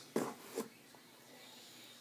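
Two short rustles of a T-shirt being handled and turned over, both within the first second.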